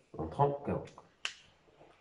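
A man speaks briefly, then a whiteboard marker's plastic cap gives a single sharp click a little past the middle.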